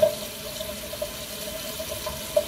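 Bathroom tap running into a sink, a steady rush of water with a faint steady tone in it.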